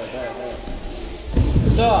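A heavy thud about one and a half seconds in as a child fighter is taken down onto the gym floor mat, with children's voices calling out around it.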